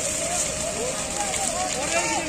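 Men shouting to one another in raised voices, overlapping, over a steady noisy background with a constant hum underneath.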